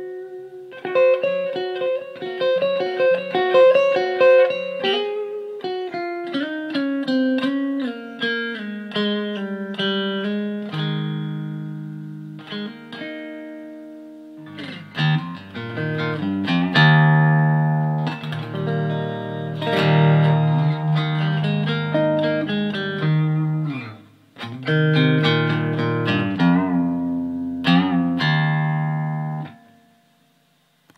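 Electric guitar played solo: a fast picked run of single notes that steps gradually down in pitch, then fuller low chords from about halfway. There is a brief break a few seconds before the end.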